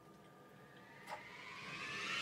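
Electronic music riser: a whooshing sweep climbing steadily in pitch and growing louder, with a short click about a second in.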